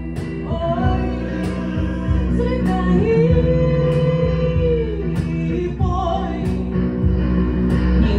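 A live band playing: a woman singing over electric guitar and drums, with regular cymbal strokes. Near the middle she holds one long note for about two and a half seconds.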